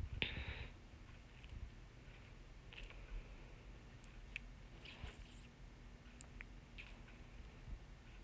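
Faint scrapes and scattered light clicks of a wooden spoon stirring a wet onion, herb and tomato mixture in a metal pot, a little louder just after the start.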